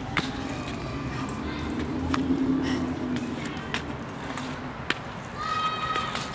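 Indistinct voices in the background over a low steady hum, with a few sharp clicks and a brief high-pitched call near the end.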